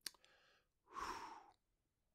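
A short click, then a breathy sigh into a close microphone about a second in, lasting under a second.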